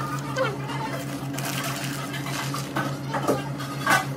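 Paper sandwich wrapper crinkling in the hands over a steady low electrical hum, with a couple of sharper crackles near the end.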